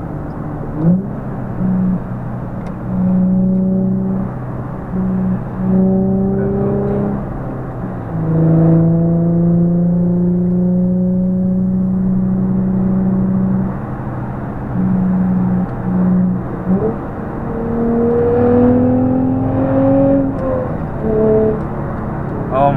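Car engines accelerating at highway speed, heard from inside a car's cabin. The engine note climbs in pitch over several short pulls and holds steady through a long stretch in the middle.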